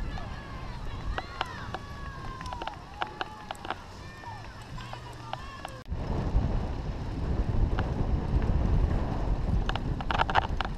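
Faint distant voices with scattered sharp clicks over a quiet outdoor bed. About six seconds in it cuts abruptly to a louder low rumble of wind on the microphone and mountain-bike tyres rolling over a dirt track.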